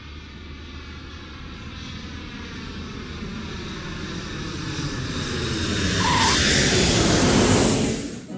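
Jet engines of a twin-engine Boeing 737-type airliner coming in to land, with a faint whine that slowly falls in pitch. The engine noise grows steadily louder as the jet touches down and is loudest near the end.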